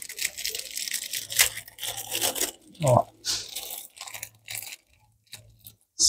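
Small clear plastic bag crinkling and rustling in several bursts as small rough beryl crystals are worked out of it by hand. A short voiced sound comes about three seconds in.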